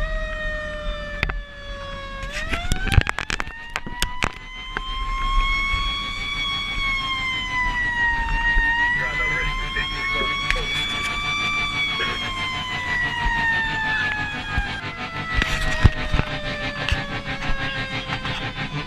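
Fire apparatus siren winding slowly up and down in pitch: it climbs twice, then falls away over the last few seconds. Sharp clicks and knocks come in short clusters along with it.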